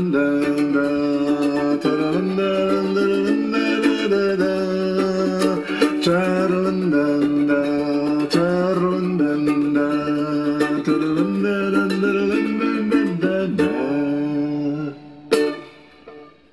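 Toy plastic ukulele strummed in a steady rhythm with a man's voice singing along wordlessly, the chords and sung notes shifting every second or two. The playing stops about a second before the end.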